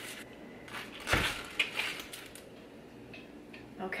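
Kitchen knife chopping the crown off a pineapple on a plastic cutting board: one solid thud about a second in as the blade goes through, then a few lighter knocks as the fruit is handled.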